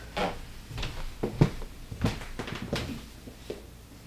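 A string of irregular light knocks and clicks, about eight in four seconds, the kind made by someone handling things and moving about in a small room.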